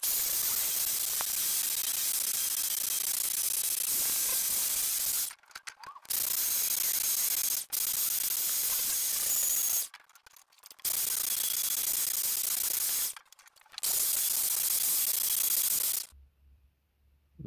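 A wire wheel spun by a handheld corded electric drill scrubs a freshly cast Nordic Gold (copper-zinc-aluminium-tin) bar, making a loud steady hissing scratch. It comes in four runs, each stopping sharply for about a second before the next.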